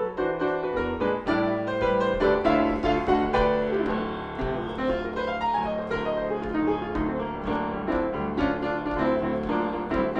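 Solo acoustic piano playing a jazz fusion tune, quick melody notes and chords over a sustained low bass note.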